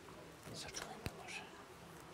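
Faint whispering, with a single sharp click just past halfway.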